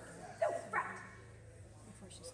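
A dog barking twice in quick succession, two short barks about a third of a second apart, the first dropping in pitch.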